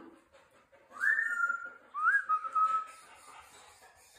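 African grey parrot giving two whistled notes about a second apart, each sliding quickly up and then held a little lower before fading.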